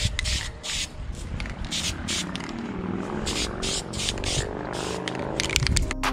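Aerosol spray-paint can hissing in short bursts as the nozzle is pressed and released, two or three a second, with a lull a little past the middle.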